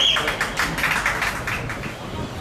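Rapid, even hand clapping, about seven claps a second, fading toward the end. A high, warbling whistle-like tone cuts off right at the start.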